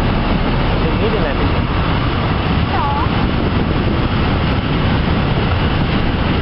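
Freight train of Railpro Fccpps hopper wagons rolling past close by: a steady rumble and clatter of steel wheels running over the rails.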